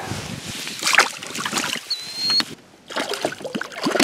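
Clicks and knocks from a rod, reel and line being handled and cast. Near the end, water splashes as a hooked bass thrashes at the surface.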